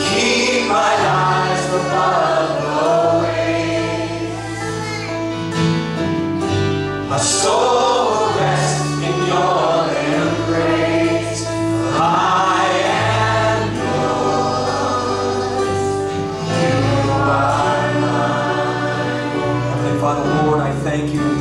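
A church worship band and a group of singers performing a praise song: several voices singing together over guitars and keyboard, with held bass notes that change every second or two.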